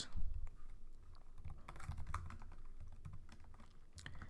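Typing on a computer keyboard: a run of light, irregular key clicks as a word is deleted and a new one typed in its place.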